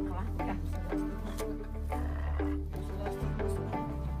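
Music: a melody of short, regularly repeated pitched notes over a steady low bass.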